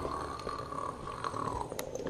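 A person's mouth holding one high, steady note that stops about one and a half seconds in, followed by a few faint clicks.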